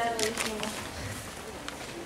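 A girl's voice speaking a few indistinct words through a microphone in the first half-second or so, then low room sound.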